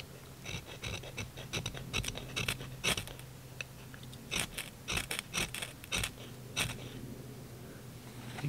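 Ferro rod struck with a steel striker over birch-bark tinder: about fifteen quick, sharp scrapes at an uneven pace, throwing sparks to light the fire.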